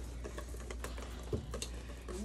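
Wire whisk stirring chocolate cake batter in a plastic mixing bowl: faint, quick clicks of the whisk against the bowl.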